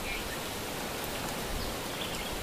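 Steady outdoor background hiss, with a faint short high chirp just after the start.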